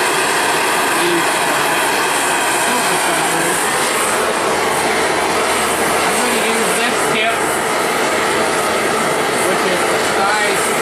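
Smith air-acetylene torch burning with a steady, loud rushing hiss as its flame heats silver in a small crucible to melt it.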